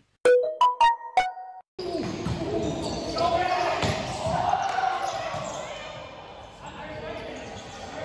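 A few short, stepping electronic notes in the first second and a half, like an edited-in sound effect. After a brief gap comes the echoing sound of an indoor volleyball rally: the ball being hit, and players' voices.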